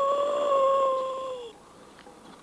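A long wavering wail held on one pitch, from the film's soundtrack, cutting off about one and a half seconds in.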